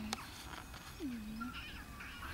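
A young puppy whining and crying in short calls: one falling cry about a second in, then a brief high whine.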